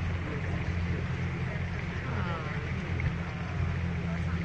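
Pontoon boat's outboard motor running steadily at low cruising speed, a low even hum, with faint voices of people on board about halfway through.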